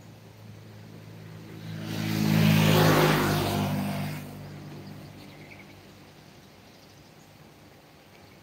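A motor vehicle passing by on the road: its sound swells to a peak about two to three seconds in, then fades away.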